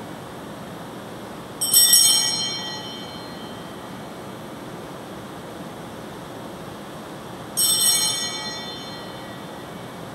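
Altar bell rung twice, about six seconds apart, each a sudden high ring that fades over about a second: the bell that marks the consecration at Mass.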